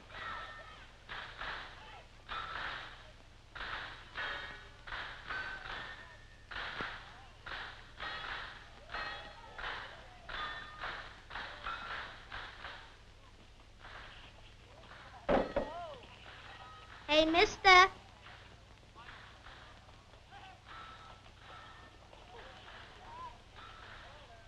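Human voices: a run of short, overlapping bits of talk and calls through the first half, then a few short, loud spoken or called words about two thirds of the way through.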